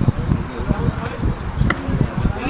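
Wind buffeting the camera microphone, a loud, uneven low rumble, with faint voices behind it.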